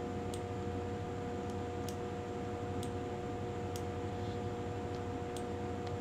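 A steady hum with a few faint, sharp clicks spread irregularly through it, from clicking on the computer while editing.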